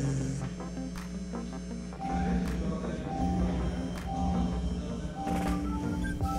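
The Great Stalacpipe Organ playing a slow tune by itself: rubber-tipped mallets strike tuned stalactites, giving struck, ringing notes one after another, with deeper low tones joining about two seconds in.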